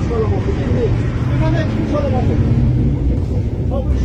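A moving vehicle's engine and road rumble, heard from inside the vehicle, with indistinct men's voices over it.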